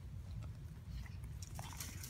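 A dog biting and gnawing at hard-packed dirt, giving irregular gritty crunches that come thicker near the end.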